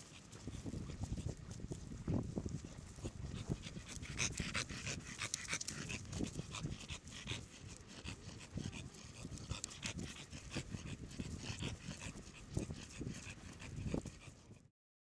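American Bully dog panting as it walks on a leash, with short breaths repeating over a steady low rumble.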